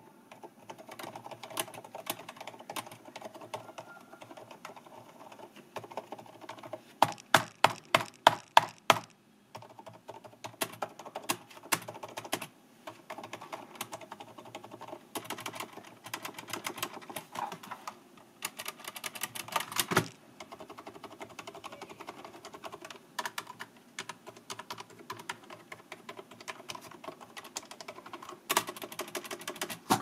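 Continuous typing on a mechanical keyboard fitted with silent 'peach' switches, giving soft, muffled keystrokes. A quick run of about eight louder strokes comes a third of the way in, and single louder strokes come later.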